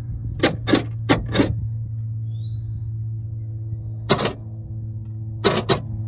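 Power door lock actuator in a Honda Element's rear hatch being test-powered from a 12-volt feed: a steady hum with a series of sharp clacks, four quick ones at the start and three more near the end.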